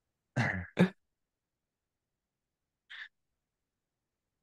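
A man's brief laugh in two quick bursts. After it there is silence, broken only by a faint short hiss about three seconds in.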